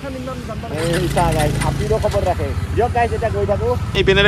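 Voices talking over the steady low running of a motorcycle engine, which comes up about a second in.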